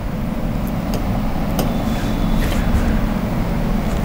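Steady low rumble of background noise, with a few faint clicks.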